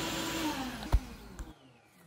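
A 4.25 hp shop vac pulling air through a C6 Corvette's stock air filter assembly winds down, its whine falling in pitch and fading under the rush of air. There is a short tap about a second in, and the sound cuts off about one and a half seconds in.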